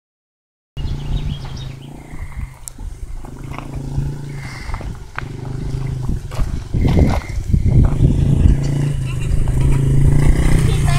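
Yamaha TT-R50 dirt bike's small four-stroke single-cylinder engine running at low, steady speed, growing louder as the bike approaches; the sound starts a little under a second in.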